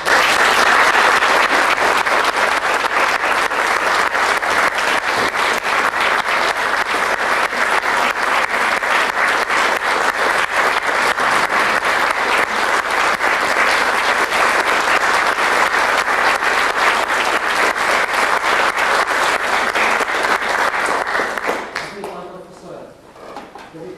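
Theatre audience applauding: the clapping breaks out suddenly, keeps up a dense, steady clatter for about twenty seconds, and dies away near the end.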